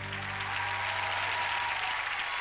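Studio audience applauding as the band's final electric-guitar chord rings out and fades within the first half-second.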